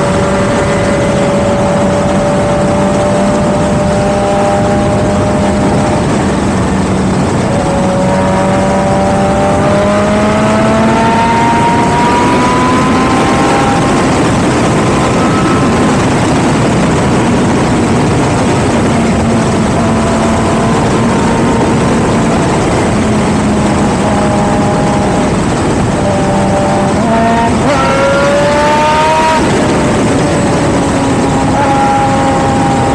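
A sport motorcycle engine running at road speed, heard from on board with heavy wind rush over the camera. The engine note holds steady at first, climbs as the bike accelerates from about eight seconds in, then drops and climbs again near the end as it shifts up.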